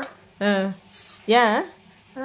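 Speech: two short voiced phrases, each about a third of a second, with quiet gaps between them.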